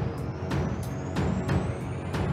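Theme music for a TV programme's opening titles: a driving percussion beat of about three hits a second over a heavy low end, with a high tone rising steadily through it.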